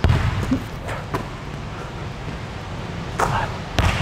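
A basketball bouncing on a hardwood gym floor: a few separate thumps, one at the start, one a little after a second in, and two more in the last second.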